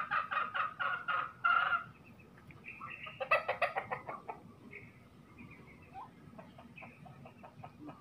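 Chickens clucking in quick runs of short calls, loudest in the first two seconds, with another burst a little after three seconds and fainter clucks later.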